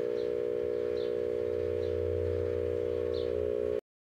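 Microwave oven running: a steady electrical hum of several held tones over a deeper hum that swells in the middle. It cuts off abruptly a little before the end.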